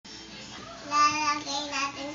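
A young child singing a short sing-song phrase that begins about a second in.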